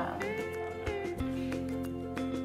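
Background music with plucked notes over held tones, with a short drawn-out "um" at the start.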